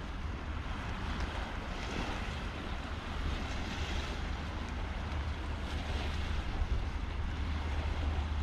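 Strong wind buffeting the microphone with a steady low rumble, swelling a little with the gusts, over the hiss of wind and small waves washing on the shingle shore.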